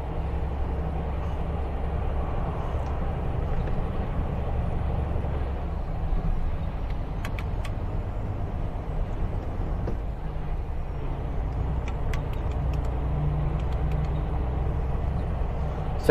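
Heavy truck's diesel engine pulling steadily up a long mountain grade: a constant low drone with tyre and road noise over it, and a few faint clicks about seven and twelve seconds in.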